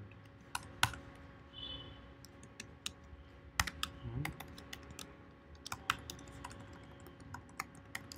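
Computer keyboard being typed on in short, irregular bursts of clicking keystrokes.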